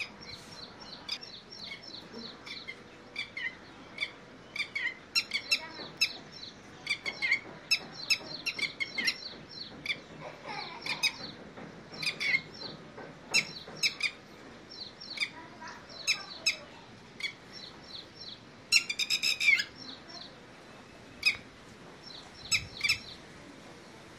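Red-wattled lapwings calling: many short, high chirps come one after another, with a loud, rapid string of calls about nineteen seconds in.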